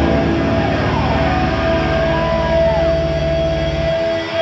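Hardcore punk band playing live, loud: an electric guitar holds one long sustained note with a few wailing pitch slides above it, over a steady low bass note that cuts off at the very end.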